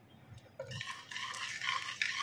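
Wire whisk stirring through thick cornstarch batter in a metal pot: a rhythmic swishing scrape that starts about half a second in.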